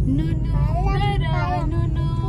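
Steady low road and engine rumble inside a moving car's cabin. A melodic singing voice comes in just after the start, its pitch gliding up and down.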